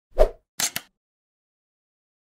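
Animated-logo sound effects: a low plop about a quarter second in, then two quick, brighter hits close together about half a second later.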